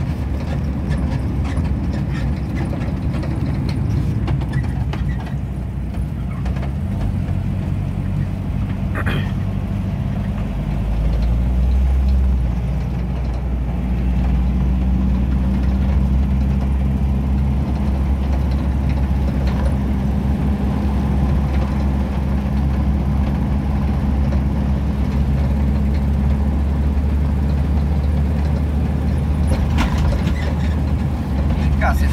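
Engine and road noise heard from inside a moving vehicle's cab: a steady low drone that shifts in pitch and gets a little louder about twelve seconds in.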